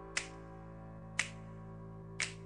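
Two finger snaps about a second apart over a quiet, held chord in the music track.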